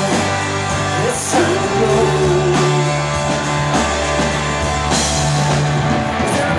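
Live rock band playing: electric guitars, bass and drums, with a man singing lead. Cymbals crash about a second in and again near five seconds.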